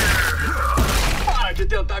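Cartoon crash effect of a large digging robot smashing through trees: a heavy crash with a deep rumble and a falling whine that fade out about a second in.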